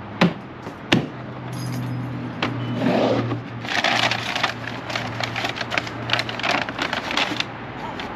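Plastic Playmate cooler being opened: two sharp plastic clicks in the first second, then several seconds of dense rattling and rustling as a paper bag of silverware is handled inside it.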